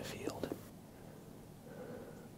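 A man whispering a few words that end within the first second, then quiet.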